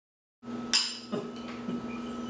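Glassware clinking: one sharp, bright clink about three quarters of a second in, then a couple of softer knocks, over a steady low room hum.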